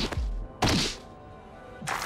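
Two heavy impact sound effects of an animated fight, each a sharp hit with a steeply falling boom, about two thirds of a second apart, over dark background music. Just before the end a dense, rapidly pulsing rush of noise begins.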